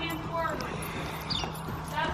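Soft hoofbeats of a palomino horse walking past on arena sand, with a faint distant voice and a steady low hum behind.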